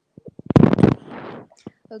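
A loud crackly burst of noise on a video-call microphone, about half a second long, trailing into a softer hiss, with a few sharp clicks before and after it.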